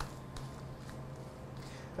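Faint, soft rubbing of a gloved hand spreading olive oil over a raw rack of pork spare ribs, over a steady low hum of room tone.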